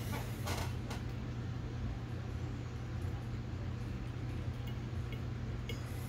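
Steady low room hum, with a few brief rustles and clicks in the first second and faint ticks near the end, from hands handling thread and materials on a fly clamped in a tying vise.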